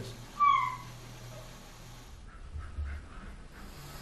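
A dog gives one short, high-pitched whine that falls in pitch, about half a second in.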